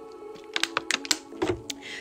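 Drinking from a plastic water bottle: a run of small, irregular clicks and crinkles starting about half a second in, over soft background music with held tones.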